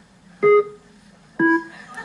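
Two single electronic chime notes about a second apart, the second lower, each marking a word landing on a TV game-show random word generator. They come after its rapid spinning run of notes.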